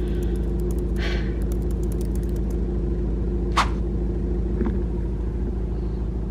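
A car engine idling, heard from inside the cabin as a steady low rumble, with one sharp click about three and a half seconds in.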